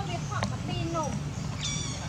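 Short high-pitched animal calls: a few brief chirps sliding in pitch, then a sharper squeal near the end, over a steady low rumble.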